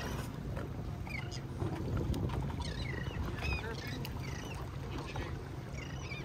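Outboard engines on a drifting fishing boat idling with a steady low hum, under the wash of the sea against the hull. Short high chirps come and go above it.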